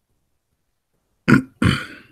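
Two short, loud non-speech vocal sounds from a person, about a third of a second apart, starting just over a second in.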